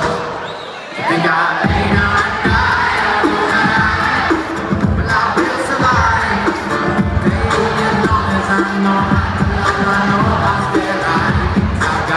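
Live music: a beatboxed beat with acoustic guitar, and a large crowd singing and cheering along. The beat drops out briefly about a second in, then comes back.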